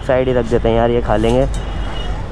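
A man's voice for about the first second and a half, over a steady low rumble of road traffic.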